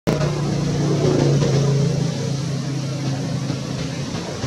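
A motor vehicle's engine running with a steady low hum, loudest in the first two seconds and then easing off a little.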